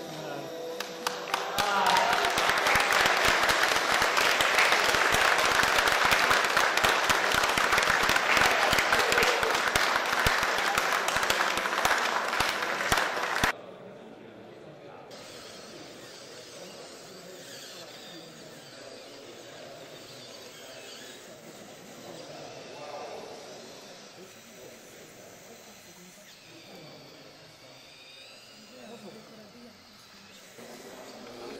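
Audience applause: a loud, dense stretch of clapping that stops abruptly about halfway through. After it, a much quieter hall with faint background voices.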